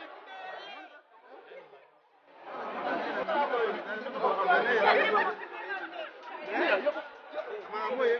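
Several people talking over one another: crowd chatter, faint at first and much louder from about two seconds in.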